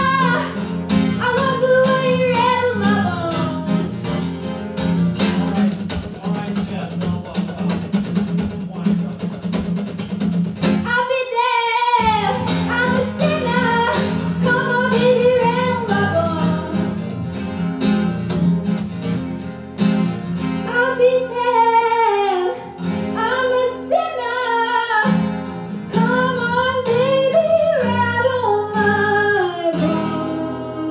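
A woman singing with her own acoustic guitar, strummed with a pick. The guitar drops out briefly about eleven seconds in, then comes back under the voice.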